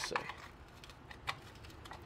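Flathead screwdriver prying at a corroded screw in the bottom rail of an aluminum window frame: a few faint metal clicks and scrapes, one about a second in.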